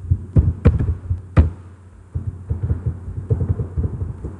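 Clicking and typing on a computer keyboard and mouse, picked up as dull knocks: a few separate sharp clicks in the first second and a half, then a quicker run of taps from about two seconds in. A steady low hum runs underneath.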